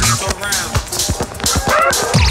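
Chicago house music played through a DJ mix. The steady kick and bass drop back into a break of quicker drum hits with a few swooping sounds, and the full beat comes back in at the end.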